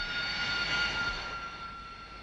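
Rolls-Royce Pegasus turbofan of a taxiing Hawker Siddeley Harrier: a steady high whine over a rush of jet noise. It swells slightly and then fades a little as the aircraft moves past.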